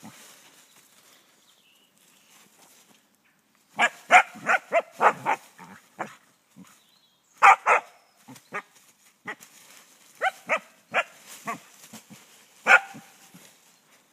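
Dog barking in short, sharp bursts: a quick run of barks starting about four seconds in, then more barks in clusters, the last near the end.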